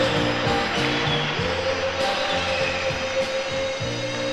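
1960s pop recording with a steady drum beat, a walking bass line and a long held note, slowly getting quieter.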